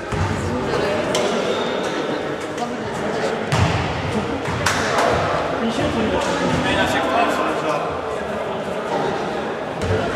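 Men talking indistinctly in a huddle in a reverberant sports hall, with a few sharp knocks about one, three and a half and nearly five seconds in.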